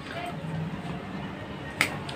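Small plastic jelly cup with a sealed film lid being turned over in the fingers, with faint plastic handling noise and one sharp plastic click near the end.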